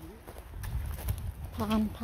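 Footsteps crunching over gravelly forest ground scattered with dry pine needles and twigs, with a low rumble on the microphone while walking.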